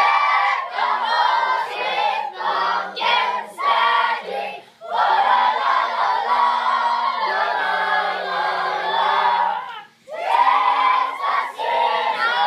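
A group of girls singing together as a choir, in loud sung phrases, with a short break about ten seconds in before they go on.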